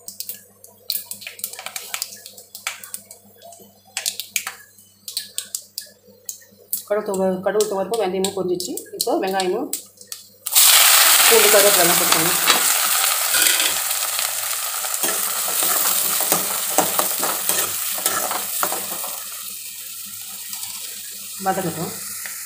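Tempering seeds crackling in hot oil in an aluminium kadai, with scattered sharp pops. About ten seconds in, sliced shallots, garlic and curry leaves hit the oil with a sudden loud sizzle. The sizzle slowly dies down as they are stirred and sautéed.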